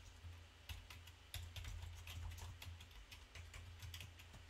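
Computer keyboard typing: a run of faint, irregularly spaced key clicks over a low, steady hum.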